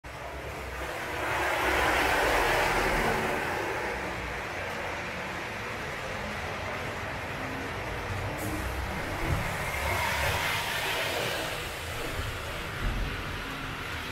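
Model trains running on a layout's track, a rushing rumble that swells about two seconds in and again around ten seconds, with a couple of small clicks.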